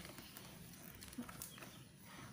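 Near quiet: faint room tone with a few faint clicks from a plastic blister pack being handled.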